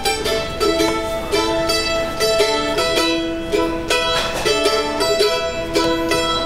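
Live bluegrass string band playing an instrumental passage: a mandolin picks a quick melody over acoustic guitar and upright bass, with no singing.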